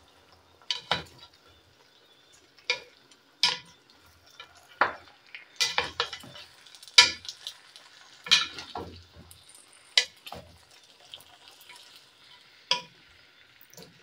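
Wooden spatula knocking and scraping against a granite-coated pan while stirring fried potato chips into a thick sauce, in about a dozen irregular strokes, with a faint sizzle between them.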